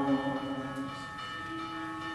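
Unaccompanied liturgical chant: a held sung chord fades away in the chapel's echo, and a single low sustained note begins in the second half as the singing picks up again.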